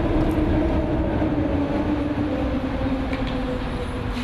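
Elevated train running on the overhead steel structure: a loud, steady rumble with a pitched whine that slowly falls.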